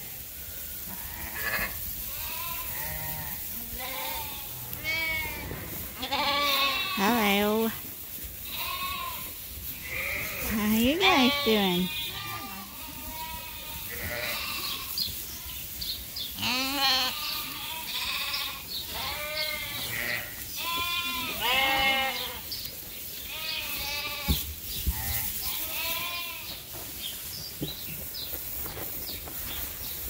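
A flock of sheep and young lambs bleating over and over, with many short, wavering calls overlapping one another. A few lower, louder bleats stand out around 7 and 11 seconds in.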